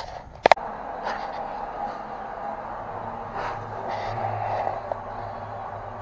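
A sharp click, then a water pump running steadily with a low hum and a rushing noise as it pumps water out of a concrete well.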